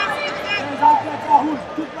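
Mostly speech: men's voices calling out over a steady background of arena noise.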